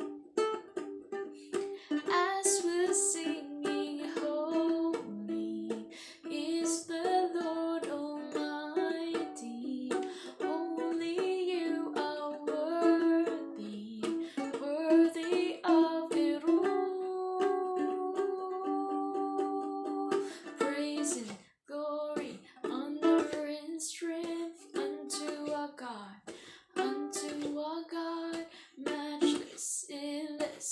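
Ukulele strummed with a woman singing over it, with one long held note a little past the middle.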